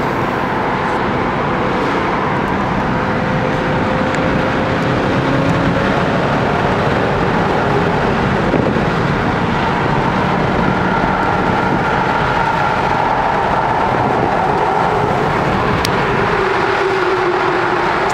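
Steady engine and tyre noise inside a BMW M3's cabin while cruising at highway speed, with the engine note drifting only slightly.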